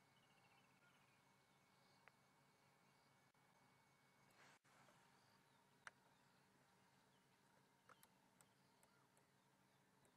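Near silence: faint bush ambience with a short run of faint bird chirps near the start and a few soft, scattered clicks.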